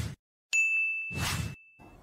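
Logo-transition sound effect: a whoosh, then about half a second in a bright single ding that rings steadily for over a second, with a second whoosh passing under it.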